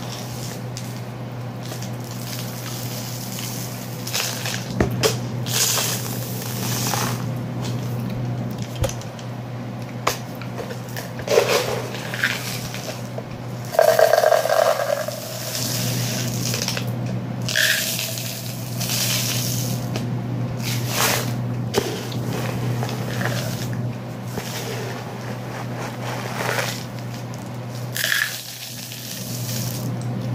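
Dry rice and beans being poured and shaken between plastic cups: a rustling, hissing patter of grains in repeated bursts of varying length, over a steady low hum.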